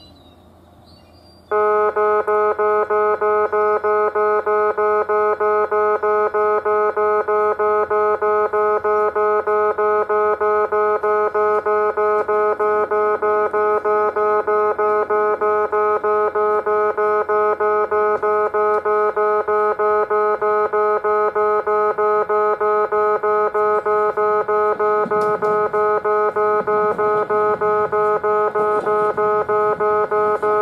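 Electronic railway level-crossing warning bell starting about a second and a half in and ringing steadily, the same chime repeating several times a second. A train's running noise rises underneath near the end as it approaches.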